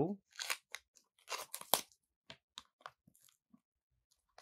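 Clear plastic blister pack of a new SSD being pried open and its paper backing torn: irregular crinkling and crackling, busiest in the first two seconds and thinning out to a few scattered crackles after.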